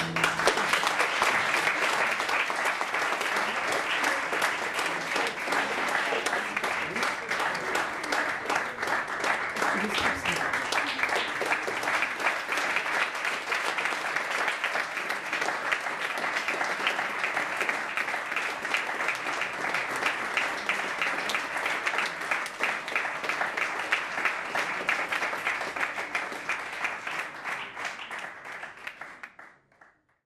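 Audience applauding steadily after the last guitar note, clapping that tapers and fades out near the end.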